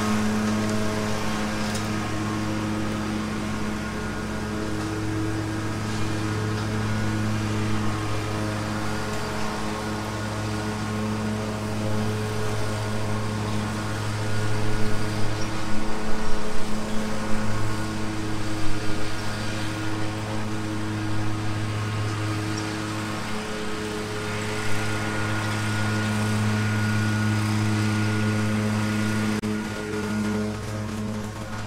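Lawn mower engine running steadily at full throttle, with a rougher, uneven stretch about halfway through as it works through tall, dry grass.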